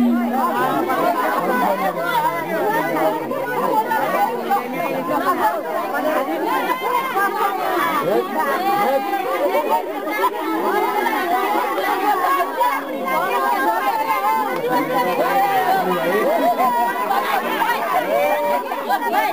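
Crowd chatter: many people talking over one another at once, steady throughout.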